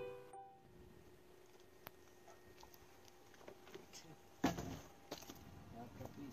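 A short musical phrase ends within the first half second. Then faint background noise, broken about four and a half seconds in by one loud, sharp knock and a few lighter knocks just after.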